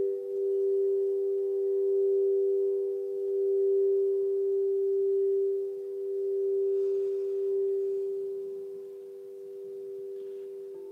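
Frosted quartz crystal singing bowl sung with a wand rubbed around its rim: a steady pure hum of two close tones that swells and eases in waves, tapering off over the last couple of seconds.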